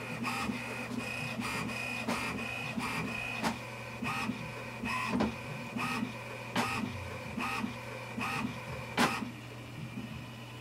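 HP Envy 5055 inkjet printer printing its alignment page after new ink cartridges are fitted: the print carriage shuttles back and forth with a steady whine and a click at each pass, somewhat more than one a second, as the sheet feeds out. The loudest click comes near the end.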